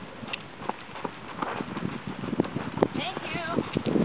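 Hoofbeats of a Morgan mare trotting on gravel, a steady run of clip-clops that grows louder towards the end. A person's voice comes in briefly about three seconds in.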